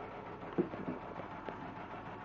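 Quiet handling noise as a thread cone is moved and set down behind the embroidery machine, with a light knock about half a second in and a smaller tick near the middle.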